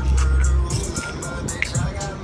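Loud street noise: music playing nearby over traffic, with a vehicle's low rumble that stops under a second in.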